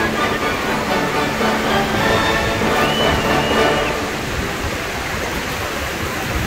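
Steady roar of Horseshoe Falls' falling water and spray heard close below the falls, with music over it for about the first four seconds.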